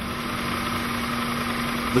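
Sprefix spray-insulation machine running steadily while glass wool is fed in to be torn and granulated: an even mechanical hum with one constant low tone.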